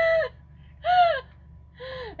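A person's short, high-pitched yelp or gasp about a second in, following the end of a burst of laughter, with another voice starting near the end.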